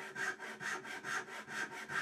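Japanese-style pull saw cutting into the end grain of a hardwood board in a vise, in quick, even rasping strokes about four a second, sawing the side of a rebate down to the gauge line.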